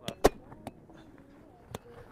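Spikeball (roundnet) rally: sharp slaps of hands striking the small rubber ball and its pops off the round trampoline net. There are four hits, the loudest a quarter second in and the last near the end.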